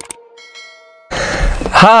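A short click, then a brief bell-like chime of a few clear tones: the sound effect of an animated subscribe button being clicked. Just after a second in the sound cuts to a man starting to speak, a greeting, which is the loudest part.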